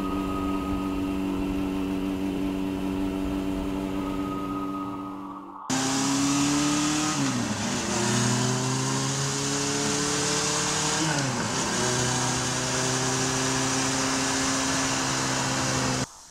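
Cafe racer motorcycle engine running at a steady note, then after a sudden cut pulling harder with its pitch climbing and dropping sharply twice, as at gear changes, before settling to a steady note.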